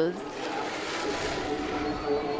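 Snowboard sliding down a groomed snow slope: a steady rushing hiss of the board over the snow, with faint voices in the background.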